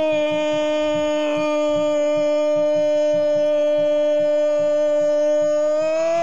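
A male radio football commentator's long drawn-out goal cry, 'gooool', held loud on one steady pitch, calling a goal just scored.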